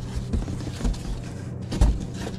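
Corrugated cardboard boxes rubbing and scraping against each other as a small shipper box is lifted out of a larger carton, with a dull thump near the end.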